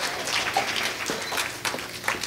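Quiet room noise in a pause between speakers, with soft rustling and a few faint clicks, as at a lectern where papers and a microphone are being handled.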